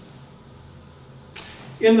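Quiet room tone with a faint steady electrical hum, a brief soft noise about a second and a half in, then a man's voice beginning to speak at the very end.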